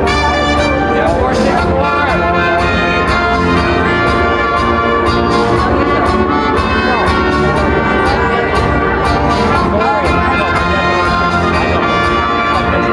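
Tango music with brass instruments, played for a ballroom Smooth tango heat, with a steady, even beat.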